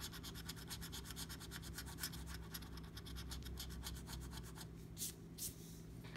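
A coin scratching the coating off a scratch-off lottery ticket in quick, faint back-and-forth strokes, about ten a second, that give way to a few last separate scrapes near the end.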